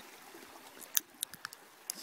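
Faint steady rush of meltwater flowing through and around a road culvert. It is broken by a handful of short sharp clicks in the second half, the first and loudest about a second in.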